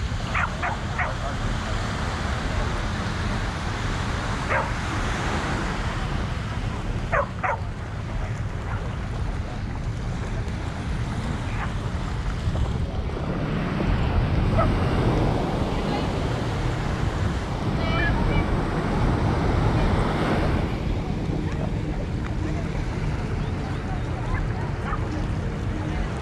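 Wind buffeting the microphone over small surf washing onto the sand, swelling louder for several seconds past the middle. A few short, distant dog barks and faint voices come through, mostly in the first half.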